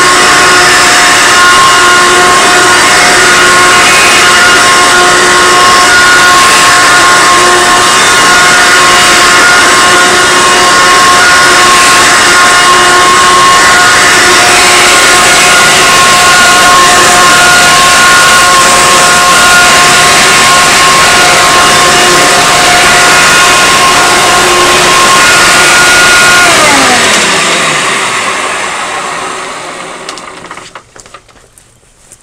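Hoover Encore upright vacuum cleaner, fitted with a new belt, running with a steady motor whine. About 26 seconds in it is switched off and the whine falls in pitch and fades as the motor spins down.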